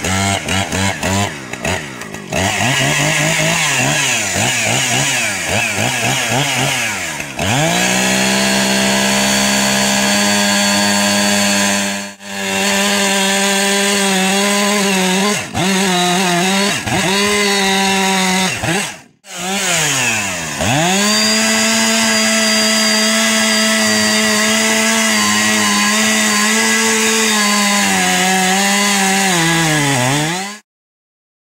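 Two-stroke chainsaw running hard while ripping lengthwise through a large oak log. The engine note drops and climbs back several times as it comes off and back onto throttle, with a few abrupt breaks in the sound.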